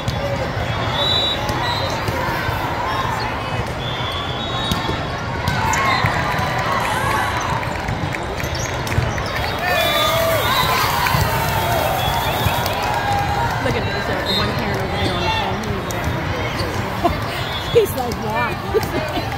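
Indoor volleyball court sounds in a large hall: ball hits and shoe squeaks during a rally, over a steady background of spectators' and players' voices.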